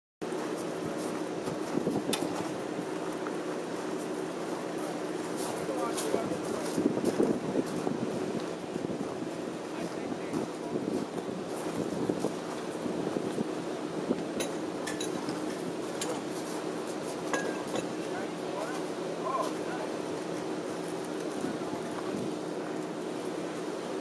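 Indistinct voices over a steady low hum, with occasional short light clinks and clicks.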